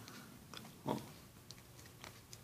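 Faint small clicks and rubbing of a small plastic toy figure being handled in the fingers, its jointed limbs moved.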